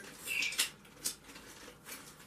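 Light rustling and a few sharp, small clicks from handling a packet of guitar tuning keys.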